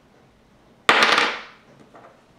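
An AA alkaline battery dropped about six inches onto a hard tabletop: a sharp clatter of a few quick knocks about a second in, fading over half a second. It hits and falls over without bouncing, the sign of a good, charged battery in the drop test.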